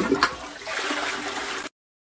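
A toilet flushing: water rushing into the bowl, which cuts off suddenly shortly before the end.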